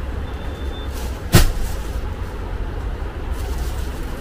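A steady low rumble with a single sharp knock about a second and a half in, the loudest moment.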